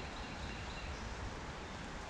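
Steady, even hiss of a shallow creek running over gravel, with no distinct events.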